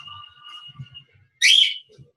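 Soft low thuds of feet stepping during a workout, under two faint steady high tones in the first second. About one and a half seconds in comes a short, loud, high-pitched sound that bends in pitch.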